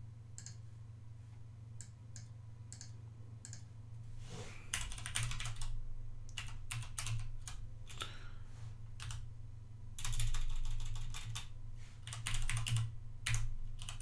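Typing on a computer keyboard. A few single clicks come first, then a run of keystrokes starts about four and a half seconds in and is busiest around ten seconds in.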